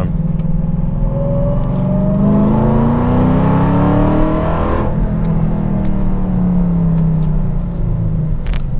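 Supercharged 6.2-litre Hemi V8 of a Hennessey HPE850-tuned Dodge Challenger Hellcat, heard from inside the cabin, accelerating hard with its note rising in pitch for about four seconds. Then the throttle is lifted suddenly and the note falls away as the car slows.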